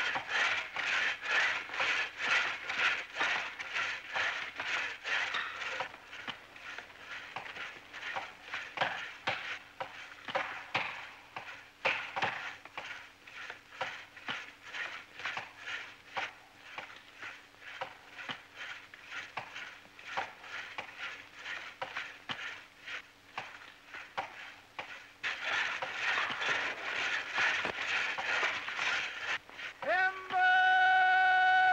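Axes chopping into a standing tree trunk in a fast, even rhythm of strokes as a tree is felled, louder in the first few seconds and again near the end.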